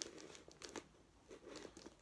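Faint crinkling and small clicks of a plastic mailer bag as a knife pierces it to cut a hole.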